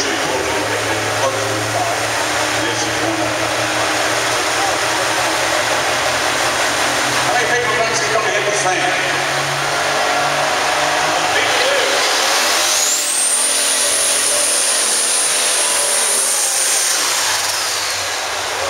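Turbocharged diesel pulling tractor's engine running loud in an arena, with a high whine that rises about two-thirds of the way through and holds for a few seconds. Voices over a PA and the crowd are heard under it.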